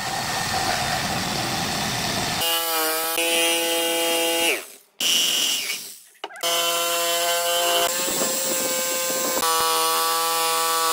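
Makita 4327 jigsaw cutting through a thick wooden board. A coarse rasping noise in the first couple of seconds gives way to the motor's whine. About halfway the motor is switched off and winds down, then it starts again about two seconds later and runs on.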